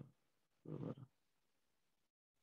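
Two short hummed 'ıhı' vocalizations from a person, like a murmured 'uh-huh', the second just under a second in, then near silence on the call.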